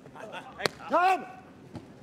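A beach volleyball struck hard by hand, one sharp smack about two-thirds of a second in, followed at once by a short, loud shout from a person.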